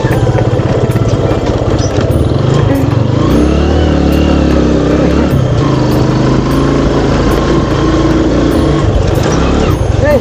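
A TVS commuter motorcycle's single-cylinder engine running steadily while being ridden, its note rising for a moment about three seconds in.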